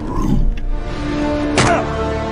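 Film score music with held notes. A gravelly, growled voice sounds briefly at the start, and a sharp swoosh-like hit comes about a second and a half in.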